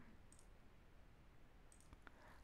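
Near silence with two faint computer mouse clicks, one about a third of a second in and one near the end.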